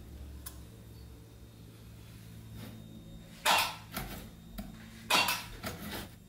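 Homemade battery spot welder firing short, loud pulses as its twin copper electrodes weld a nickel strip onto 18650 lithium-ion cells. Two main welds come about three and a half and five seconds in, each followed by a lighter one, over a faint steady hum.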